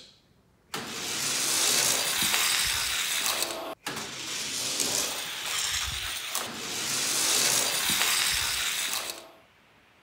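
Die-cast Hot Wheels cars rolling down and along an orange plastic track, a steady rolling hiss from the wheels on the plastic. It starts suddenly about a second in, breaks off sharply near four seconds and starts again at once, running on for about five seconds before fading out: two runs.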